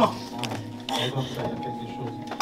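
Indistinct voice sounds over the held, steady notes of background church music.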